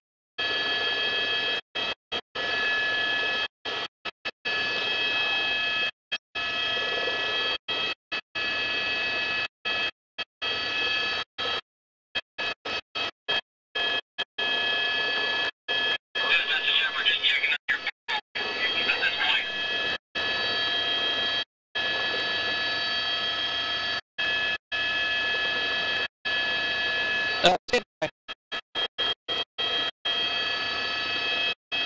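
News helicopter cabin noise carried over the crew intercom feed: a steady turbine whine made of several fixed tones, broken again and again by brief dropouts. Around 16 to 19 seconds in, a few seconds of radio chatter come through over it.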